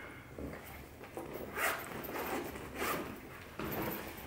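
A black fabric backpack being packed and handled: rustling of cloth, with short zipper strokes about a second and a half in and again near three seconds.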